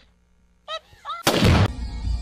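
A single very loud blast about a second in, trailing into a low rumble.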